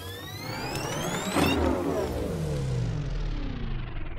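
Electronic logo sting: a swell of rising tones that peaks about a second and a half in, followed by a lower tail of falling tones.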